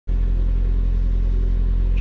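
A narrowboat's inboard diesel engine running steadily under way, a constant low hum.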